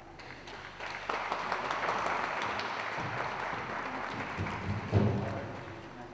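Audience clapping in a hall, swelling about a second in and fading near the end. A low thud comes about five seconds in.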